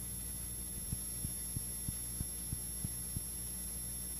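A low, steady hum in the silent gap between two music tracks, with a run of eight faint ticks, about three a second, through the middle.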